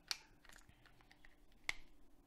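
Small clicks and taps from whiteboard markers being handled: one click just after the start, a sharper, louder one near the end, and faint ticks between.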